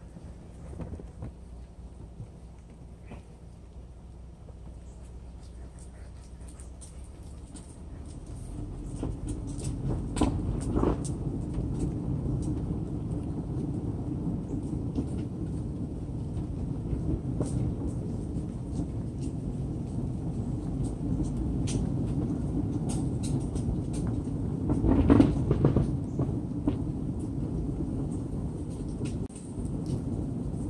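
Low rumble of a car rolling slowly along a paved driveway, growing louder about eight seconds in, with a couple of brief louder surges.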